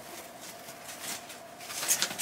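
Faint rustling and handling noise from rummaging through a purse's contents, with a steady faint hum underneath; a louder rustle starts right at the end.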